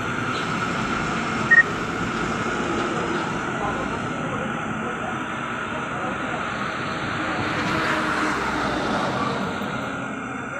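Steady road noise from heavy truck traffic on a highway, swelling as a vehicle passes about eight seconds in, with a short high beep about a second and a half in.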